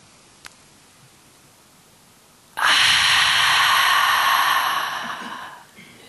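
A long open-mouthed sighing exhale from a held deep breath, close to a headset microphone. It starts suddenly about two and a half seconds in and fades away over about three seconds.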